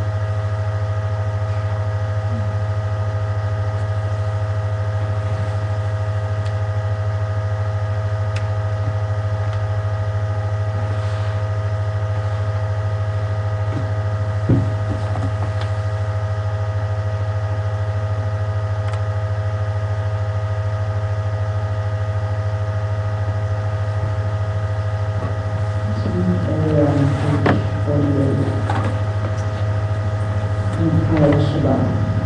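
Steady low hum with a few faint steady higher tones, unchanging throughout: a drone in the recording rather than music. There is a single click about halfway through, and a voice begins near the end.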